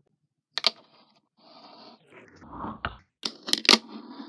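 Fingerboard rolling across a tabletop, its small wheels making a rolling rasp, with sharp clacks as the board's tail pops and the board lands on the table. There is a single clack about half a second in, another near three seconds, and a quick cluster of the loudest clacks just after.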